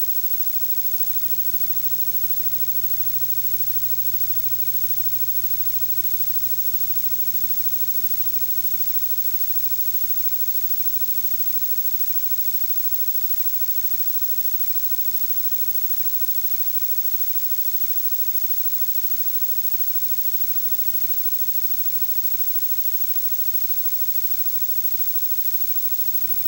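Steady low electrical hum with constant hiss and no programme sound: the background noise of an old off-air videotape recording over a blank screen.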